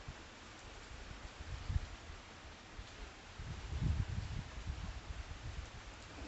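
Steady hiss of light rain outdoors, with low buffeting rumbles on the phone's microphone about a second and a half in and again around four seconds in.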